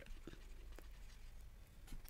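Faint scratching and light ticks of a stylus writing on a tablet screen, over a low steady hum.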